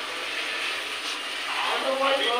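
Steady hiss from the gas stove, where a kadai sits over a lit burner, with a voice starting near the end.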